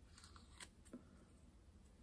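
Near silence with three faint clicks in the first second, from fingers picking loose dead skin off the sole of a foot that is shedding after a peeling foot mask.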